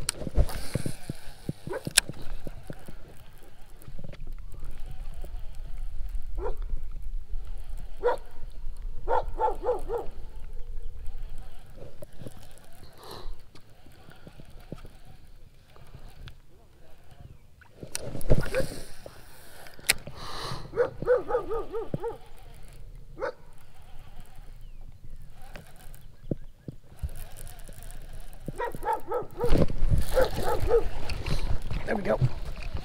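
A low rumble of wind on the microphone, with a few sharp clicks from a baitcasting reel and rod being handled, and short barks from a dog now and then, loudest about two-thirds of the way in.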